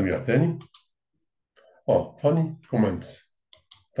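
A man speaking, with a pause about a second in. Near the end, three quick sharp clicks of a computer mouse advancing a presentation slide.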